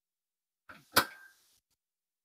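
A single sharp knock of a hard object on a stainless steel workbench top about a second in, with a short metallic ring after it and a softer touch just before.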